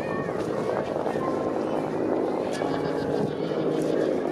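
Crowd chatter: many people's voices talking at once in a steady mix.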